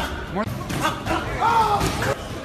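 A man shouting excitedly in Spanish during boxing sparring, with a couple of sharp thuds of boxing gloves landing, about a second in and near the end.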